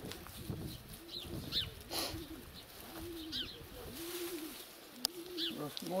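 Birds calling: a low cooing repeated about once a second, with a few short high chirps from a smaller bird.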